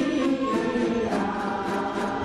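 A large ensemble of Taiwanese yueqin (long-necked moon lutes) plucked together, with a mass chorus singing a folk song in unison over them.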